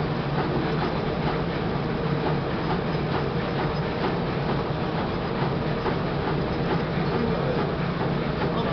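Rollmac Uniroll SP doctor blade coating machine running, a steady mechanical hum of its rollers and drive with faint irregular ticking over it.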